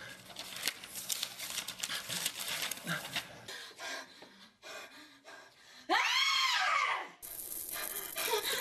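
Horror-film sound track: a crackling, rustling noise full of small clicks for the first few seconds. Near the end comes a loud cry about a second long whose pitch rises and falls, followed by a steady hiss.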